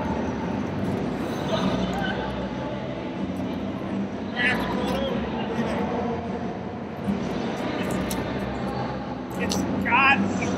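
Steady din of a busy exhibition hall: distant crowd chatter over a constant low hum.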